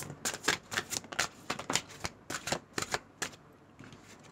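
Tarot cards being handled and shuffled: a quick, irregular run of crisp card snaps and slaps that stops about three seconds in.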